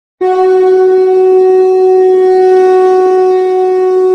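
A conch shell (shankh) blown in one long, loud, steady note, beginning just after the start.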